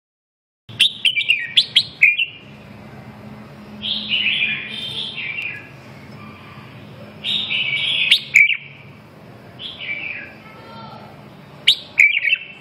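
Red-whiskered bulbuls singing: short, bright whistled phrases in bouts every two to three seconds, starting just under a second in.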